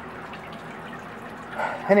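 Homemade swamp cooler running: a steady trickle of pump-fed water dripping from the wet cardboard pad into the plastic tub below, over the box fan's whir.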